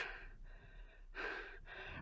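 A man's single breath about a second and a quarter in, lasting about half a second, taken in a pause between spoken phrases.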